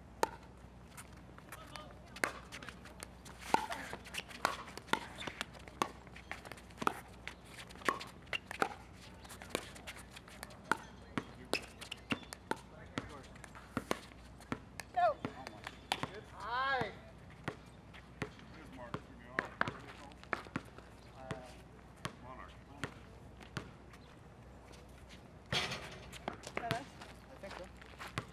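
Sharp pops of pickleball paddles hitting a plastic pickleball through a doubles rally, coming irregularly, often one or two a second, with the ball bouncing on the hard court between strokes.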